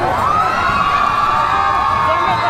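Large crowd cheering and shouting, with one long drawn-out cry that rises at the start and is held for over a second above the din.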